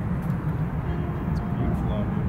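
Steady low outdoor rumble, with faint voices in the background.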